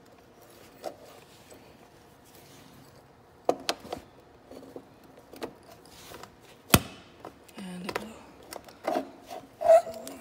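Handling noise from a heavy power cord and its plug: scattered clicks and knocks, with one sharp click, the loudest sound, about two-thirds of the way through.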